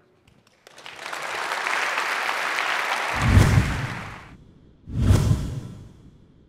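Audience applauding, which swells up and fades out about four seconds in. Two loud, deep thuds break in, one about three seconds in and another about five seconds in.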